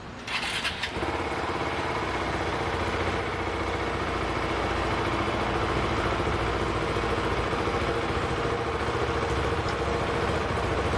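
Motorcycle engine cranking and catching about half a second in, then idling steadily.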